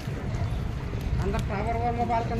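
People talking nearby over a steady low rumble, with a few sharp taps about a second in.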